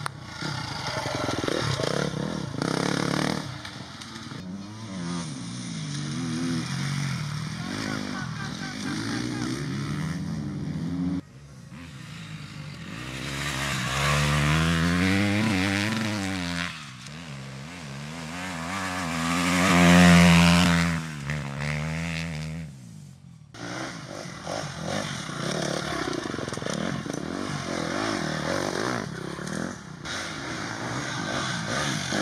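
Enduro dirt-bike engines revving hard and easing off as riders race past on dirt and grass. The revs rise and fall repeatedly, and the loudest pass comes about twenty seconds in, its pitch climbing and then dropping. There are abrupt cuts between passes.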